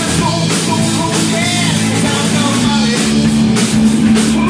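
Live rock band playing: electric guitar, bass guitar and drum kit, with a steady bass line under regular drum hits.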